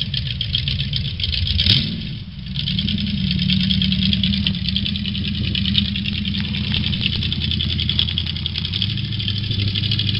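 Big-block V8 engine of a bar-stool hot rod idling steadily, briefly louder about two seconds in.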